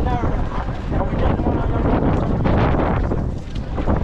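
Wind buffeting the microphone, with the voices of a crowd underneath.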